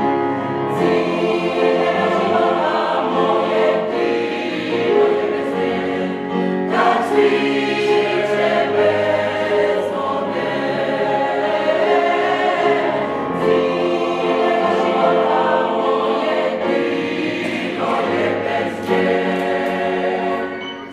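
Mixed choir of men's and women's voices singing in harmony, with new phrases starting every few seconds.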